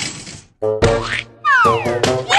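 Cartoon comic sound effects with music: a short rising pitch glide about halfway through, then a quick falling glide near the end, boing-like.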